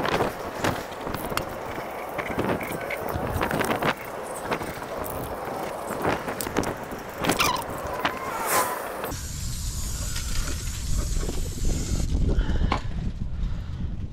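Wind buffeting the microphone, with a couple of short squeals past the middle. Near the end comes a steady hiss of about three seconds, an aerosol can spraying gloss enamel.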